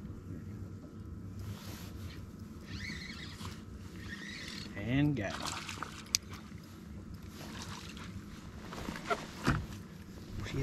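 Low steady hum of a bow-mounted electric trolling motor. A short murmured voice rises and falls about halfway through, and a few sharp knocks come near the end as a fish is hooked.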